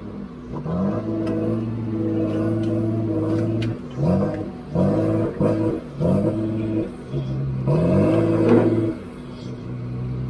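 Heavy diesel logging machine engine revving up and dropping back again and again, six or seven times, heard from inside a loader's cab.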